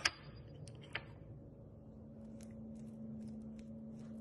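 A utensil clicking and tapping against a small container of jelly: a few sharp clicks in the first second, the loudest at the very start, then fainter light ticks near the end, over a low steady hum.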